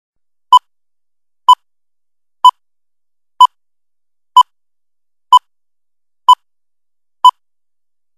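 Short electronic beeps of one steady pitch, once a second, eight in all, with dead silence between: a broadcast countdown leader's timing beeps.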